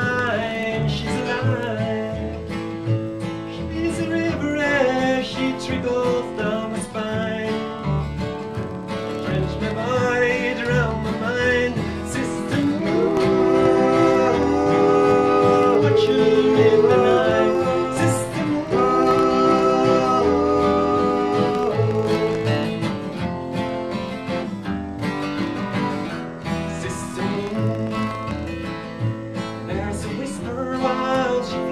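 Live acoustic country/Americana music: two steel-string acoustic guitars played over a plucked upright double bass, with a melody line on top. The music swells louder in the middle and eases back toward the end.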